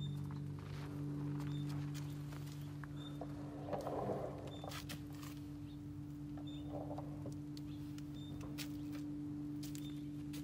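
A steady low hum holding two tones, with scattered footsteps and light knocks as someone walks among the benches, and faint short high chirps now and then.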